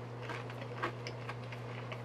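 Faint chewing of a bite of crispy vegetable samosa: soft scattered clicks and crunches, the most distinct a little under a second in. A steady low hum sits under it.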